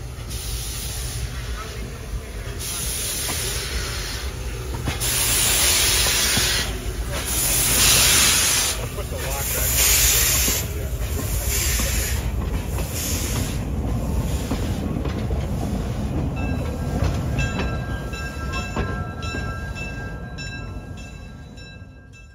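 Small narrow-gauge steam locomotive, a 1907 Baldwin, working with repeated hissing chuffs of exhaust steam; the loudest part is a run of long steam blasts in the first half. In the last quarter faint thin high squealing tones join the running sound, and it fades out at the very end.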